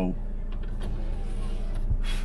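Steady low hum of a car running, heard inside the cabin, with a soft knock near the end.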